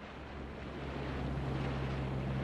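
Wind rushing on an outdoor microphone over a steady low engine hum, fading up from silence and growing louder.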